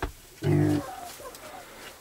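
Hens clucking quietly, with one brief low vocal sound about half a second in.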